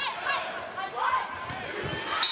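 Indoor arena crowd noise and voices during a volleyball rally, with one sharp smack of a volleyball being hit about one and a half seconds in.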